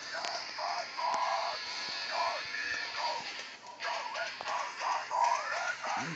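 Playback of a band's newly recorded song with sung vocals over studio speakers, heard thin with little bass.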